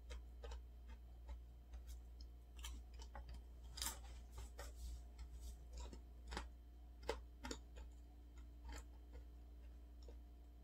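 Close-up eating sounds: chewing with small wet mouth clicks and smacks, irregular, a few a second, louder about four and seven seconds in. A steady low hum lies under them.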